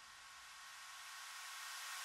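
Faint white-noise sweep of a house track's build-up, growing louder as its low end thins out.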